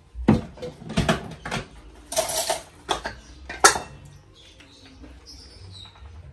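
Spoons knocking and scraping against a plate and a plastic bowl while food is served: a run of sharp clinks and knocks with a short scrape about two seconds in, going quieter after about four seconds.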